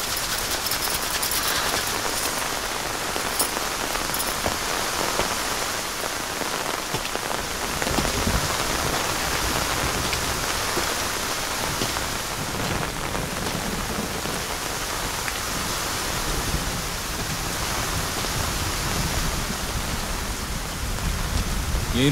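Heavy rain pouring steadily, a dense even hiss of rain on the ground and surfaces, with a low rumble underneath from about eight seconds in.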